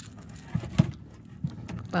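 Handling noise from hands working fishing line and a hard-bodied lure close to the microphone: a few light knocks and taps, the sharpest just under a second in.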